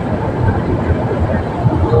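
Steady road and engine noise inside a moving car's cabin at highway speed, a low rumble with no sudden events.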